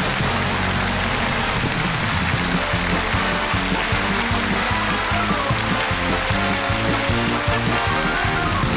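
Live stage band playing the opening music, with steady audience applause over it.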